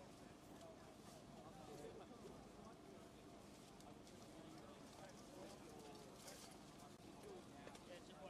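Faint murmur of a waiting crowd's voices, with a few light clicks and taps.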